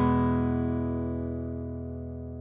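The ringing decay of a single down-strummed acoustic guitar chord, fading steadily with no new strum. It was recorded through a Townsend Labs Sphere L22 modeling microphone set to a U47 model in cardioid.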